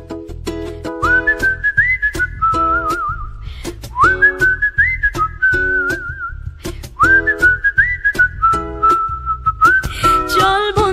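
Background music: a whistled melody over plucked string chords and bass. The tune opens with a rising slide about every three seconds.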